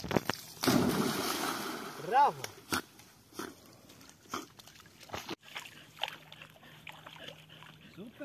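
Water splashing loudly for about a second and a half as a dog swims after a floating ring toy. A short rising-and-falling vocal exclamation comes about two seconds in, followed by scattered small knocks and clicks.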